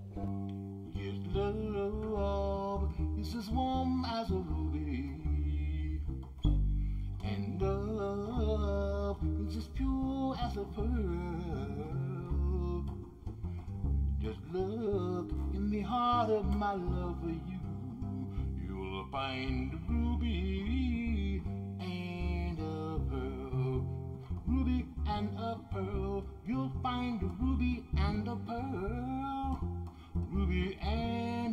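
Upright double bass played pizzicato, a run of plucked low notes, with the player singing a wordless line along with it.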